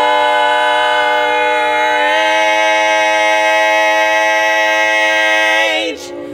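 Women's barbershop quartet singing a cappella, holding one long chord that shifts slightly about two seconds in and is released just before the end.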